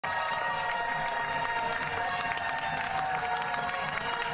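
Marching band brass holding sustained notes over a studio audience applauding and cheering.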